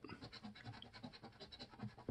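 Faint scratching of a coin rubbing the coating off a scratch-off lottery ticket, in quick repeated strokes.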